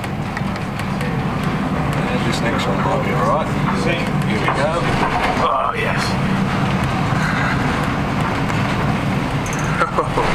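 Storm wind blowing hard over a ship's deck, with heavy seas and spray breaking over the bow, heard as loud, steady wind noise on the microphone.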